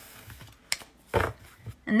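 Tarot cards being handled: a sharp click, then a short soft rustle.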